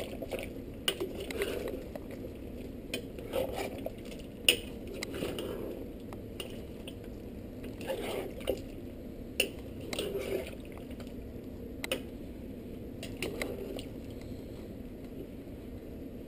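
A spatula stirring a thick stew of chicken, potatoes and carrots in tomato sauce in a large pan: wet sloshing and scraping, with irregular clinks and knocks of the spatula against the pan.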